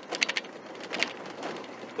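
In-cab engine and road noise of a 1995 Ford Ranger with a 2.5-litre four-cylinder, pulling away gently at low revs. A few sharp clicks come in the first half-second and one more about a second in.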